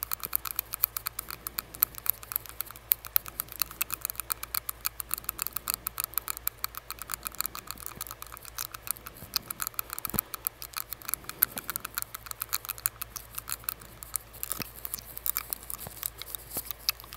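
A metal tongue ring clicking against the teeth, a rapid, irregular run of sharp mouth clicks close to the microphone, heard through a surgical face mask.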